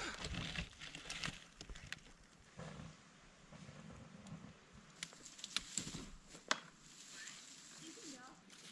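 Small wood campfire crackling faintly, with a few sharp pops in the second half.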